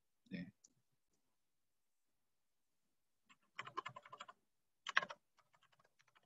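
Faint typing on a computer keyboard: a rapid run of keystrokes about three and a half seconds in, a louder stroke about a second later, then a few light taps, as a command is typed into the debugger.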